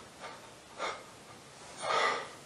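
A man's breathing between sentences: a short sharp intake just before a second in, then a louder gasping breath near the end.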